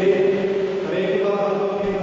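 Sung liturgical chant, one long held note that fades near the end.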